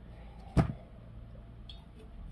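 A paperback coloring book being lifted and set aside, with one short, sharp knock of its cover about half a second in, over a faint low hum.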